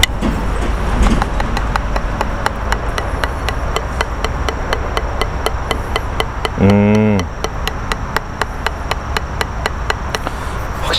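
Drumsticks tapping a rubber drum practice pad in an even run of strokes, over a low steady hum of road traffic. A short vocal sound about two-thirds of the way through is louder than the strokes.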